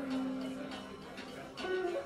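Live small-group jazz: a sustained melody note held for about a second and a half, then a higher note, over light cymbal and drum strokes.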